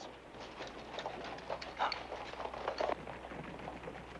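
Hoofbeats of several cavalry horses on a dirt street, an irregular run of dull clops.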